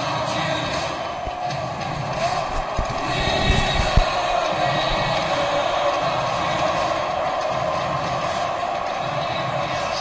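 Music playing in a hockey arena over a steady crowd hubbub during a stoppage in play, with a few low thumps near the middle.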